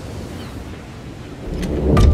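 Steady noise of wind and surf on an open seashore, with a deep rumble swelling near the end.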